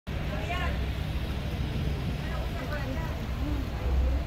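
A crowd of people talking outdoors, several voices overlapping, over a steady low rumble.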